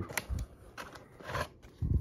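Rigid plastic toploader card holders clicking and scraping against each other as a stack of trading cards is handled and pulled from a storage box, in a few short, sharp clicks.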